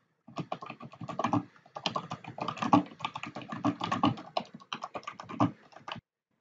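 Typing on a computer keyboard: a fast, continuous run of keystrokes.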